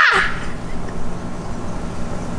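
A man's loud yell ("ah!") that falls sharply in pitch and breaks off about a quarter second in, followed by quieter steady background noise with a faint low hum.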